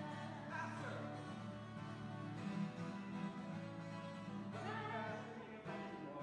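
Acoustic guitar strummed in a steady rhythm with a voice singing along.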